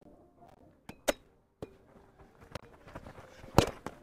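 A rally of roundnet (Spikeball) play: a series of short, sharp slaps and pops as hands strike the small rubber ball and the ball bounces off the taut net, with a serve about a second in and the loudest hit near the end.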